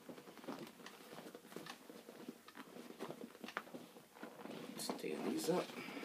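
Items being handled inside a leather handbag: rustling, with small objects clicking and knocking, busiest about five seconds in.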